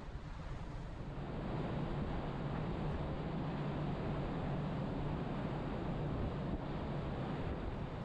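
Wind buffeting the microphone on the deck of a moving ferry, over the ship's steady low rumble and the wash of the sea; the wind grows a little stronger about a second and a half in.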